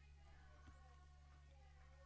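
Near silence: a steady low hum under faint, far-off voices, with one small click a little after the start.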